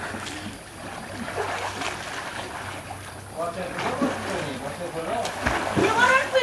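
Swimmers moving and splashing in a swimming pool, with children's voices calling out in the second half.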